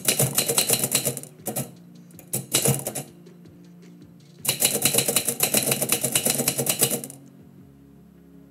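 Manual typewriter keys struck in quick runs of sharp clacks with short pauses between: a burst at the start, two short ones between about one and a half and three seconds, and a long run from about four and a half to seven seconds. Faint background music with steady low notes underneath.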